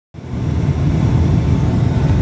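Airliner cabin noise in flight, heard inside the passenger cabin: a steady low rumble of jet engines and rushing air that cuts in suddenly at the very start.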